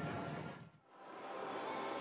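Faint steady background noise from a live broadcast. It drops almost to silence about three-quarters of a second in, as the feed switches between sets, then comes back at the same low level.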